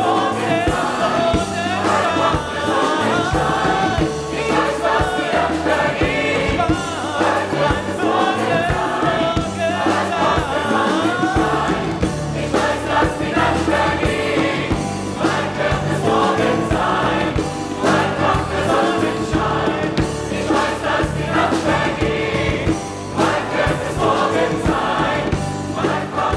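Mixed choir singing in full harmony with a live band accompanying, a steady drum beat running under the voices.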